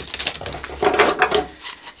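A tarot deck being riffle-shuffled by hand, the bent cards flicking together in a rapid run of clicks that stops shortly before the end.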